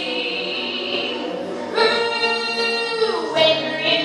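Woman singing a show tune, holding one loud note from about halfway through that slides downward shortly before the end.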